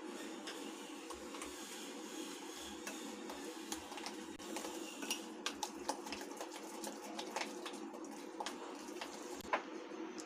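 A plastic spoon stirring semolina and buttermilk into a paste in a glass bowl, with faint scattered scrapes and small taps against the glass over a steady low background hum.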